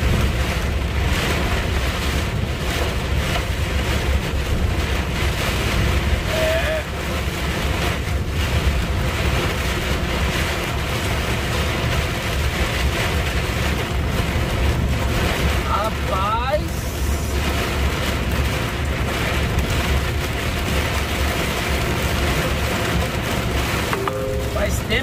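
Heavy rain mixed with small ice pellets drumming steadily on a truck's cab and windscreen, a dense hiss full of small hits, over the constant low rumble of the truck's engine and tyres on a flooded road.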